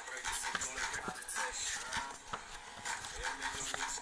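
Czech rap track playing in a pause between rapped lines, its beat and backing running on.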